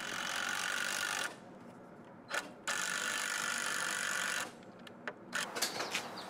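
Cordless drill driving screws into a 2x4 crossmember: a run of about a second, a short blip, then a steadier run of nearly two seconds, with a few clicks near the end.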